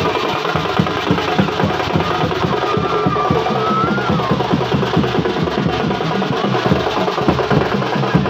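Loud music made of fast, dense drumming, with a single wavering melody line gliding above the beat.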